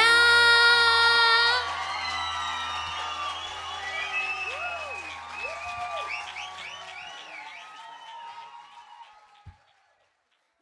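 A woman holds the song's final sung note over acoustic guitar and band for about a second and a half, then the crowd cheers, whoops and applauds, fading out near the end.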